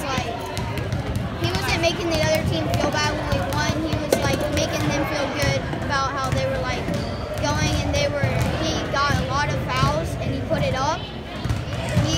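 A boy talking, with other voices chattering in the background.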